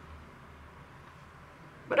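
Quiet room tone with a faint low hum, and no distinct event; a woman's voice begins right at the end.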